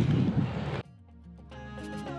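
Outdoor background noise cuts off suddenly under a second in, and instrumental background music fades in with sustained notes.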